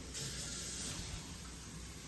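Kitchen tap running: a steady hiss of cold water that starts suddenly at the very beginning.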